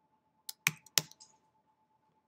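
Computer keyboard: three quick keystrokes in the first second, then a pause.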